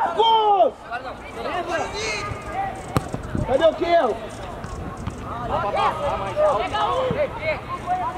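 Players and coaches shouting on an outdoor football pitch, words unclear, with a single sharp knock of a ball being kicked about three seconds in.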